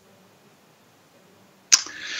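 Near silence, then near the end a sharp mouth click and a man's breath drawn in as a hiss.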